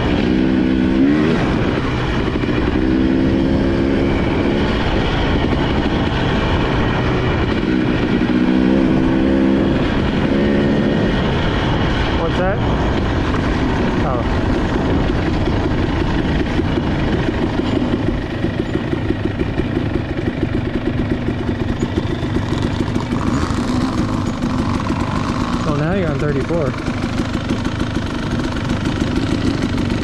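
KTM two-stroke dirt bike engine running under way on a dirt trail, its pitch rising and falling with the throttle. In the second half it drops to low revs with a choppier, pulsing beat as the bike slows to a stop.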